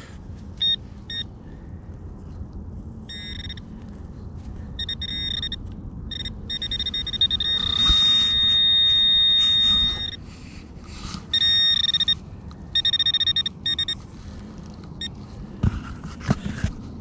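Minelab Manticore metal detector giving high electronic target tones as it sweeps the ground: short beeps and choppy runs, with one steady held tone lasting about two seconds near the middle, the loudest sound here.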